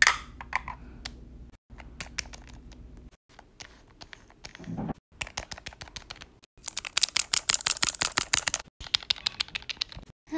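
Rapid clicking and tapping of a small plastic Littlest Pet Shop figure being hopped along a hard floor by hand. The clicks come sparse at first, with the fastest and loudest run in the second half.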